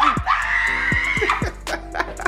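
A woman's long, high-pitched excited scream, held for about a second, as she unwraps a gift of sneakers. Underneath is background music with a deep bass beat whose strikes drop in pitch.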